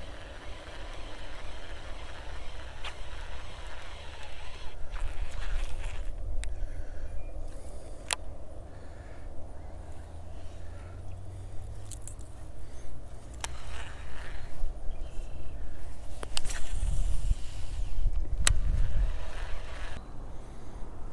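Wind rumbling on the microphone, uneven and swelling twice, with a handful of sharp clicks from handling the baitcasting reel.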